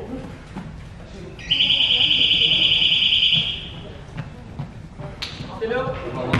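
Basketball scoreboard buzzer sounding once for about two seconds: a loud, harsh, high-pitched buzz that starts and stops abruptly.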